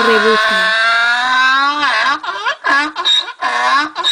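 Donkey braying: one long drawn-out call, then a run of shorter calls in quick succession.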